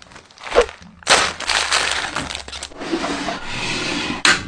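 Plastic snack-food packaging being handled and rustled, with a long stretch of dense crackling from about a second in. It follows a brief, loud swoosh about half a second in.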